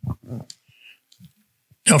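A few quiet spoken sounds, a sharp click about half a second in and some faint soft noises, then loud speech begins near the end.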